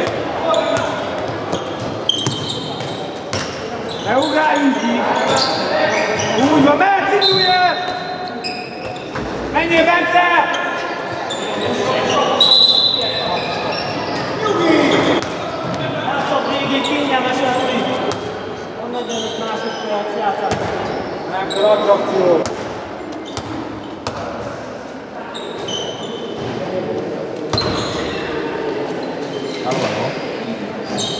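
A handball bouncing on a wooden sports-hall floor during play, mixed with players' voices calling out, all echoing in the large hall.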